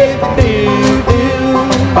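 A live acoustic country-bluegrass band playing: strummed acoustic guitar, upright double bass and a steady percussion beat, with wordless 'pum pum pum' scat singing over them.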